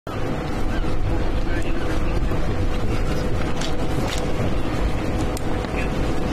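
Outdoor crowd ambience: indistinct voices over a steady low wind rumble on the microphone and a faint steady hum, broken by a few sharp clicks.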